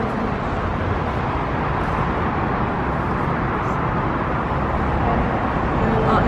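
Steady, unbroken urban background noise at a London Underground ticket machine: a continuous low rumble with hiss above it, and no single event standing out.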